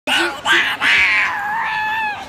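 A toddler's high-pitched squealing laughter: two short squeals, then a long drawn-out one that sinks a little in pitch.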